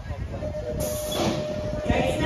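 BMX race start: a pack of riders' bikes rolling down the start hill onto the first straight, a steady rumble of tyres on the track mixed with crowd noise. A steady held tone comes in about half a second in, and the noise grows louder just before a second in.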